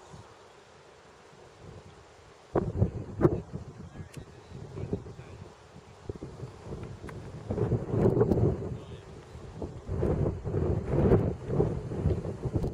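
Wind buffeting the camera microphone, coming in suddenly a couple of seconds in and then rising and falling in gusts.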